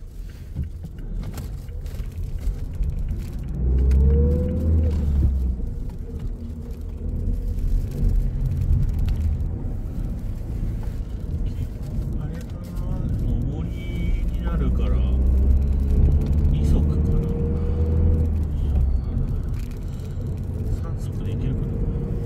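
Car engine and road rumble heard inside the car's cabin, the engine note rising as it accelerates about four seconds in and again more slowly from about fifteen seconds, with the low rumble swelling at those times.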